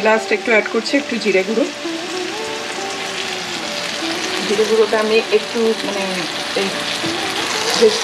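Mushrooms and green beans sizzling in an oiled frying pan: a steady frying hiss while the vegetables are stirred with a spatula.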